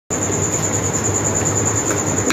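Steady mechanical hum and hiss with a thin, faintly pulsing high whine, unchanging throughout.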